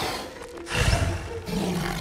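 An animated giant dinosaur, Gigantosaurus, roaring. The roar is loud and swells up a little under a second in.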